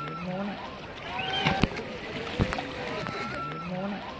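Several people's voices talking and calling out over water, with water sloshing and a few sharp knocks.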